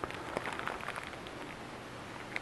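Faint rustling with scattered small, irregular clicks as packaged cables are handled and unpacked.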